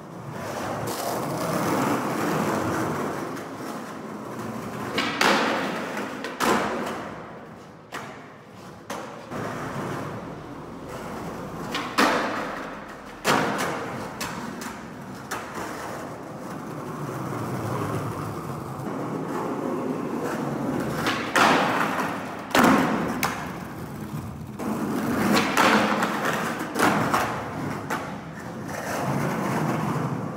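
Skateboard wheels rolling over a concrete garage floor, the rumble swelling and fading as the board passes, broken by several sharp clacks of the board hitting the ground.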